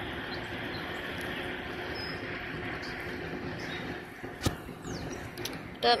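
Fire department van's engine running steadily as it tows an empty boat trailer up the ramp, with a sharp click about four and a half seconds in.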